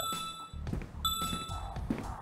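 Game-show puzzle board chiming as letter tiles are revealed, one ding for each K found in the puzzle. Two bright electronic dings, each held about half a second: one at the start and one about a second later.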